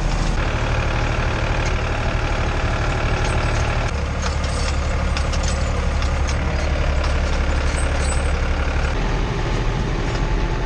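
Tractor engine running steadily, heard from inside the cab while it pulls a rotary hay rake through the field; the engine note shifts abruptly about four and nine seconds in.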